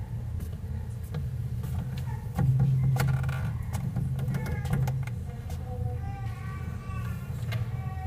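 Handheld microphone being handled and passed along: scattered clicks and bumps over a steady low hum. Faint voices come in near the end.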